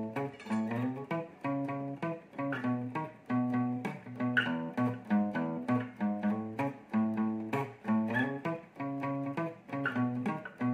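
Acoustic guitar playing a single-note bass riff on the low E string, notes picked at about two a second in a repeating pattern that shifts up the neck.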